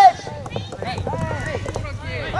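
Several voices shouting short calls across the soft tennis courts, a loud call cutting off right at the start, with sharp pops of rubber soft tennis balls being struck and bounced in between.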